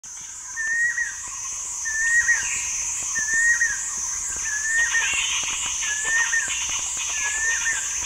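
Forest wildlife: one animal call repeated evenly about every second and a quarter, each a short held whistle-like note that dips at its end. Behind it runs a steady high insect drone with an even pulse, and more chattering calls join about halfway through.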